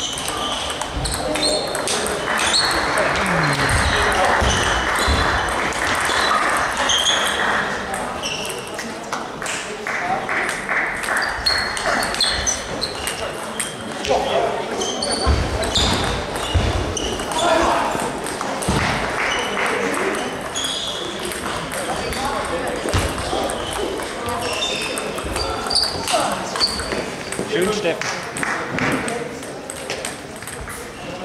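Table tennis ball clicking off bats and the table in quick exchanges, with voices murmuring in the background.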